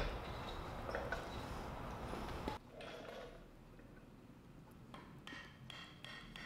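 Faint light clinks of steel parts being handled as a driver tube is set on a motorcycle steering stem and its new lower head bearing, with a faint ringing near the end, over low room noise.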